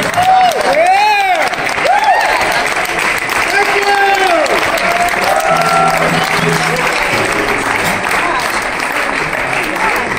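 Audience applauding and cheering, with several whoops rising and falling in pitch in the first few seconds.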